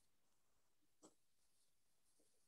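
Near silence: room tone, with one faint, very short sound about a second in.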